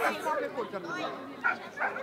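A dog giving a couple of short barks about a second and a half in, over people talking in a crowd.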